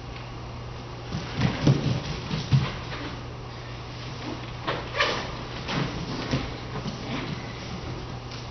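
Thuds and scuffs of dancers' feet on the studio floor, a cluster of them between about one and two and a half seconds in and a sharper one about five seconds in, over a steady low hum.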